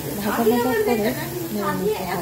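A woman speaking over the faint sizzle of shredded green tomato frying in a pan.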